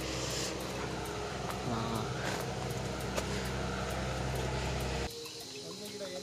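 A motor vehicle's engine running steadily with a low hum and hiss; the sound cuts off abruptly about five seconds in.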